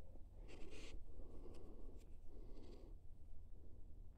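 Faint rustling and scraping of hands rummaging for and taking out a small dowsing pendulum on a string, in three short bursts with a few small clicks, over a steady low hum.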